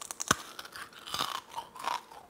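Biting and chewing frozen sour strip candy: a run of small crisp crunches, with louder crunching bouts about a second in and again near the end.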